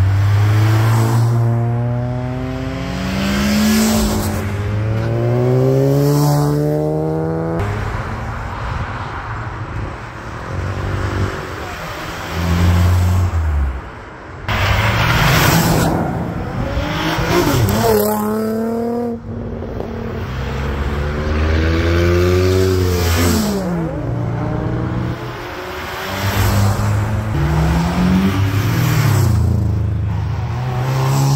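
Japanese cars accelerating past one after another, their engines revving up through the gears. Each run climbs steadily in pitch and breaks off at a gear change, several times over.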